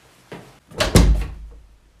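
Wooden door being shut: a faint click, then a loud slam just before a second in, with a low boom that dies away within half a second.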